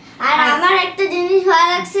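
A young boy singing in a sing-song voice, holding notes at a steady pitch after a brief pause at the start.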